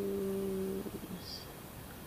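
A woman humming one steady, held note with her mouth closed, stopping about a second in.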